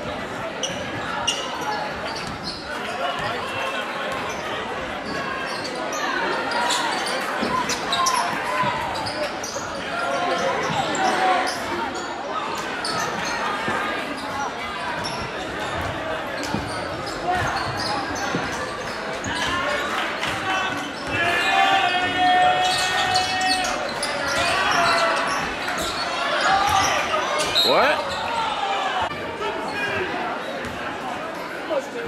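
Basketball dribbling on a hardwood gym floor during live play, amid crowd chatter and shouts echoing in a large gym, with one long held shout about two-thirds of the way in.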